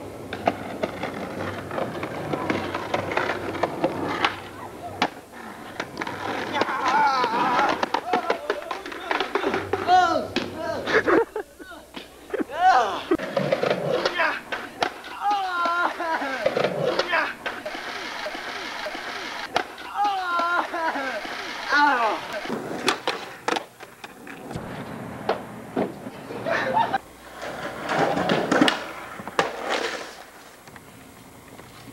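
Skateboard rolling and clacking, with repeated sharp knocks of the board, over people's voices.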